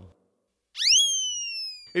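A comic synthesized sound effect, heard once: about three-quarters of a second in, after a moment of silence, a quick upward swoop into a high, bright tone that then slides slowly down in pitch and fades.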